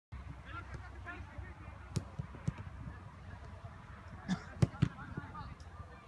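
A football being kicked during passing drills: several sharp thuds, the loudest a little past the middle, with players shouting in the distance.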